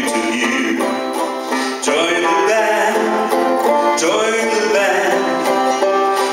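Live acoustic folk band playing between verses, with banjo picking over a melodic line that bends and swells.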